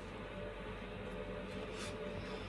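Steady low hum and hiss of room tone, with a brief faint rustle near the end.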